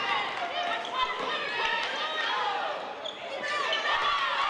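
Basketball being dribbled on a hardwood court, with players and bench voices calling out over the play.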